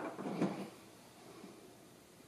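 Mostly quiet room tone, with a faint, brief scrape or knock about half a second in from the grafting knife and the potted fig rootstock being handled.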